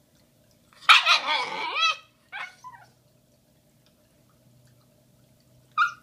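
Shiba Inu puppy vocalizing in excitement, the breed's 'talking': one long, loud whining call about a second in, two short calls after it, then a brief sharp yip near the end.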